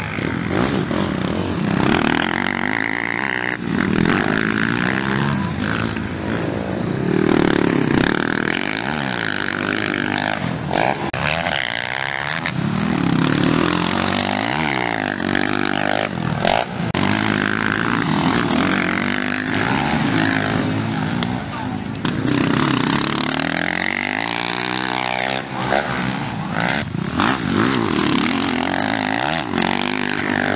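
Motocross dirt bike engines at racing speed, their pitch rising and falling over and over as the riders accelerate, shift and ease off.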